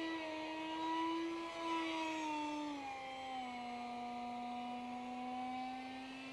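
Whine of an electric RC park jet in flight: a Fasttech 2212/6 2700 Kv brushless outrunner motor spinning an RC Timer 6x3x3 carbon three-blade prop. It is a steady tone with harmonics whose pitch drops a little about three seconds in and then holds.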